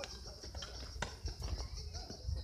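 Faint distant voices over a low rumble, with a couple of sharp clicks, one right at the start and one about a second in.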